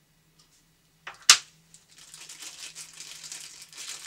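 A single sharp click a little over a second in, then steady rustling and crinkling of packaging as small accessories are taken out of the box.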